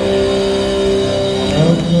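Distorted electric guitars holding a chord that rings on steadily, then shifting to a new, lower note about one and a half seconds in.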